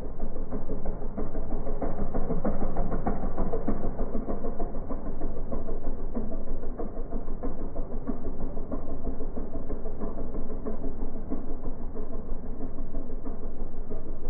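Small boat's motor running steadily as the boat moves across the water.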